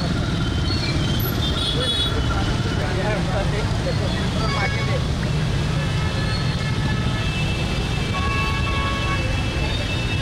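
Jammed street traffic: a steady rumble of idling motorcycles and other vehicles, with horns sounding now and then, more in the second half, and voices of people nearby.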